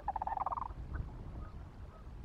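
A bird's rapid rattling call, heard once at the start, over a steady low rumble.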